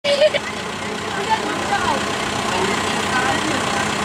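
John Deere tractor's diesel engine running steadily while it works the front loader, raising a bale grab, with the chatter of a crowd of onlookers over it.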